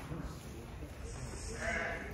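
A sheep in a crowded market pen bleats once, starting about a second and a half in and lasting about half a second.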